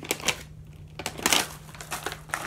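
A plastic Skittles candy bag crinkling as it is handled and opened, in two bursts, the louder one about a second in.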